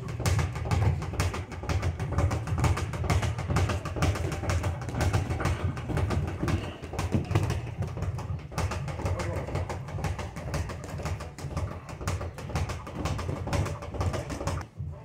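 Boxing gym noise during sparring: a dense, continuous clatter of quick knocks and thuds from gloves and feet, over a steady low rumble.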